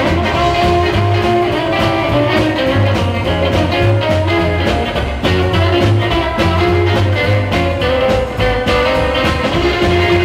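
Live rockabilly band playing an instrumental passage with no singing: electric guitar over a steady pulsing upright bass line and drums.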